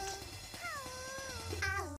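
A long, high call over background music: it falls in pitch and then holds for nearly a second, and a second falling call starts near the end.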